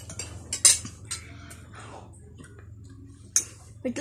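Metal spoons clinking and scraping against plates during a meal: a handful of sharp clinks, the loudest about two-thirds of a second in and another near the end, with a steady low hum underneath.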